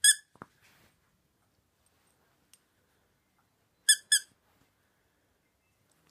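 Dog-toy squeaker inside a knitted toy mouse squeezed by hand: one short high squeak at the start, then two more in quick succession about four seconds in.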